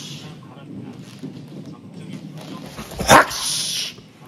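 A man's forceful, breathy 'ha' exhalations, with a sudden loud burst of breath about three seconds in, followed by a rushing exhale.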